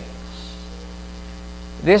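Steady electrical mains hum through a pause in a man's talk, with his voice starting again just before the end.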